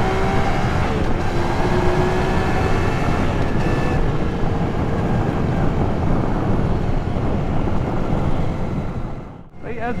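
Yamaha XSR900's inline three-cylinder engine running steadily at road speed under heavy wind and road rumble, dropping away sharply just before the end.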